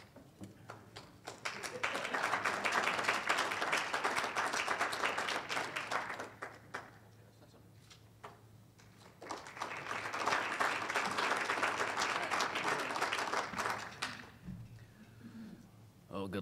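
Audience applauding in two rounds, each about five seconds long, with a short lull between them.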